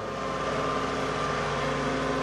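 Farm tractor's diesel engine running steadily, with a thin steady whine above its low hum.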